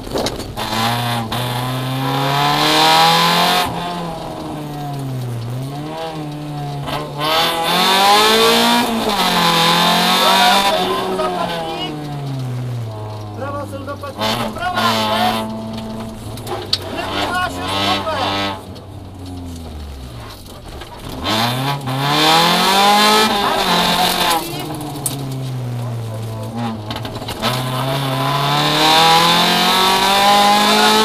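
Rally car engine heard from inside the cabin at full attack, its revs climbing hard and falling away over and over through gear changes and lifts for corners. Near the middle the revs sink low, then climb steadily again.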